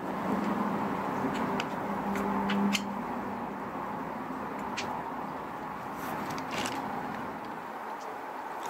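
Several metallic clicks as lifters are set into the lifter bores of an aluminium V8 block and pressed down, over a steady background hiss with a low hum that fades out about three seconds in.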